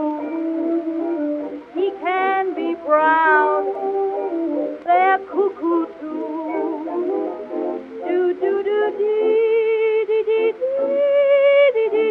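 A 1920s jazz dance-band record in an instrumental passage between sung lines: pitched melody instruments play notes with vibrato and runs of short, quick notes. It has the thin, narrow sound of an early recording with no high treble.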